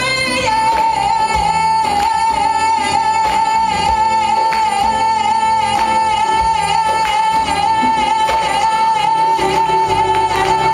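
Female singer holding one long high note, starting about half a second in and sustained through the rest, over a live band with hand-played congas and guitar.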